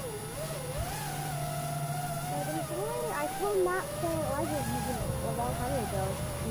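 Electric motors and propellers of an FPV quadcopter heard from its onboard camera: several whining pitches rising and falling together as the throttle changes through the chase, over a low steady hum.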